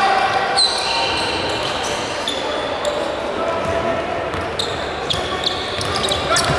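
Basketball game sounds in a large gym: several short, high-pitched sneaker squeaks on the hardwood court and a few thuds of the ball bouncing, over a steady murmur of voices from players and spectators.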